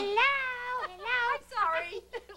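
A woman's high-pitched, wordless squeals, about three drawn-out cries that waver and slide up and down in pitch.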